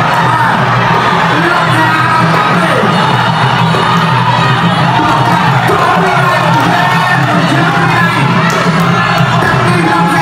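Fight crowd cheering and shouting over ringside music during a Khmer kickboxing bout, an even, loud din with no pauses.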